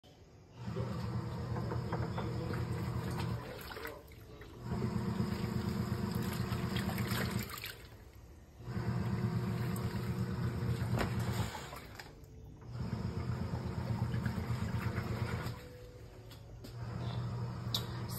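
Krib Bling portable top-load washing machine agitating in its wash cycle: the motor hums and the water sloshes in runs of about three seconds, stopping for about a second between each. There are four runs, then a quieter fifth begins near the end.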